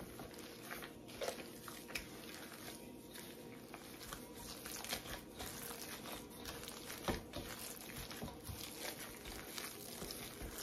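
Gloved hand kneading ground pork into a watery cure mixture in a stainless steel bowl: faint, irregular wet squishing and crinkling, with scattered small clicks, the sharpest about seven seconds in.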